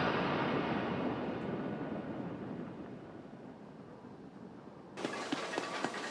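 The long rumbling tail of a loud boom in the anime soundtrack, a noisy rumble fading slowly over about four seconds. About five seconds in, a faint hiss with a few light clicks takes over.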